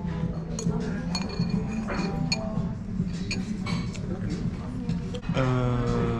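Restaurant table sounds: light clinks of tableware such as chopsticks against plates, over background music, with a voice starting near the end.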